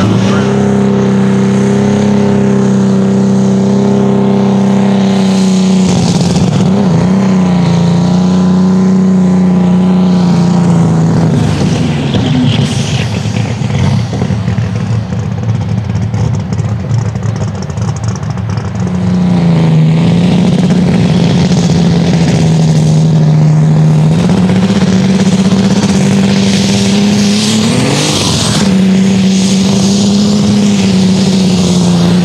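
Turbocharged diesel engines of light super stock pulling tractors, held at high rpm as a loud steady drone. Around the middle it drops to a quieter, rougher running, then a green John Deere pulling tractor revs back up to a steady high drone, with a rising rev near the end as it starts its pull.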